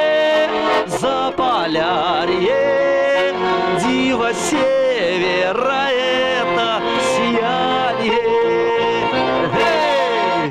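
A Russian garmon (button accordion) playing a lively folk song while a man sings over it with strong vibrato on long held notes.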